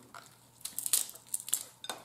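Snow crab leg shells cracked and snapped apart by hand, a quick run of sharp cracks and crunches that starts about half a second in.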